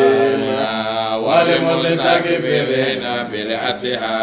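A man's voice chanting Quranic recitation in long, held melodic lines that glide between notes, with short breaks for breath.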